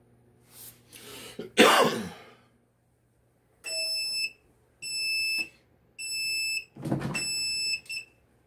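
A heat press timer beeps four times, each beep about 0.7 s long and about a second apart, signalling that the press time is up. A noisy clunk comes under the last beep as the press is opened. Before the beeps there is a loud, short noisy burst about a second and a half in.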